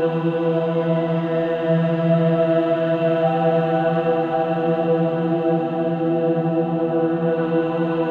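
Meditation music built on a steady, low chanted drone held on one pitch, like a sustained mantra hum.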